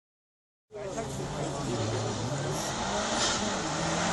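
Subaru Impreza hill-climb car's engine under hard acceleration, approaching and growing steadily louder, its pitch dropping and climbing again as it shifts gear. The sound starts just under a second in.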